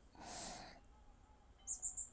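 A man's audible breath between sentences, lasting about half a second near the start, followed by faint room tone with a small high click near the end.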